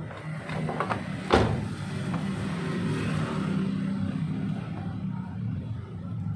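A motor vehicle's engine running close by, a low hum that swells and then fades over a few seconds, with one sharp knock a little over a second in.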